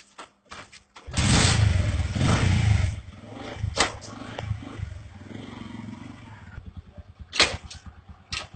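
Small motorcycle engine kick-started: it catches about a second in with a loud rev lasting about two seconds, then runs on unevenly, broken by a few sharp cracks.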